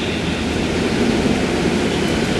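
Steady rushing background noise with a low rumble beneath it: the room tone of a hall picked up through a lectern microphone.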